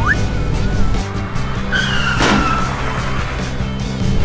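Animated car sound effects over background music: a car engine running steadily, with a short tire squeal falling in pitch about two seconds in.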